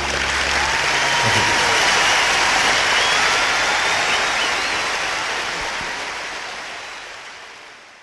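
Theatre audience applauding as the last guitar chord dies away. The applause swells for a few seconds, then fades out near the end.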